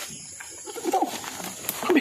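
A dove cooing in short falling notes, a pair about a second in and another near the end, over the rustle and crackle of dry bamboo leaves as a bamboo pole is jabbed into the undergrowth.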